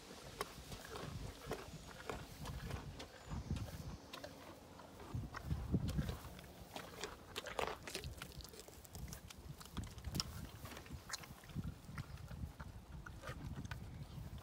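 A pony biting and crunching carrot pieces taken from a hand: irregular sharp crunches and clicks.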